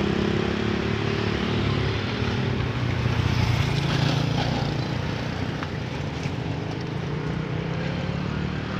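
Motorcycles passing close by, their engines a steady low hum that eases off slightly in the second half.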